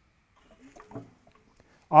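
Faint, brief mechanical sounds as a breaker bar turns the crankshaft of a junkyard Ford 302 small-block V8 backwards by hand. The engine is rotating pretty well with no crunchy sounds, a sign that it is not seized. A man's voice starts at the very end.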